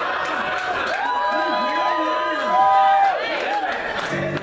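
Audience voices chattering, several at once, swelling briefly a little past halfway.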